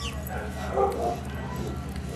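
Small Chihuahua-mix dog vocalizing briefly about half a second to a second in, a few short high sounds over a steady low outdoor rumble.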